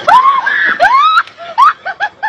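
Loud screaming cries: two long cries that rise and fall in pitch, then a run of short, sharp cries about four a second.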